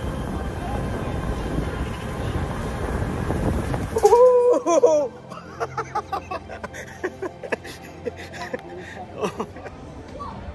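Rumbling of a rider sliding fast down an enclosed stainless-steel tube slide. It stops abruptly about four seconds in, and a loud laughing shout follows, then quieter laughter and scattered clicks.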